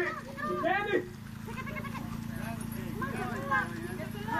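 Singing voices from the drum group break off about a second in. Then come scattered high shouts and squeals from children scrambling for candy, over a steady low hum.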